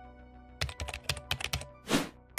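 Computer keyboard typing sound effect: a quick run of key clicks about a third of the way in, with a louder short burst near the end, over soft background music.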